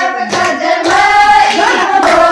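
Women singing together with hand clapping along to the song.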